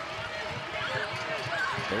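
A basketball being dribbled on a hardwood court, short repeated bounces, over the steady noise of an arena crowd.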